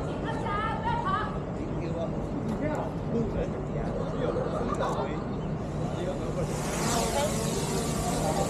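DJI Mini 4 Pro drone's propellers spinning up for take-off about three quarters of the way in: a strong, high whirring hiss that starts quickly and keeps going. Before it, voices chatter in the background.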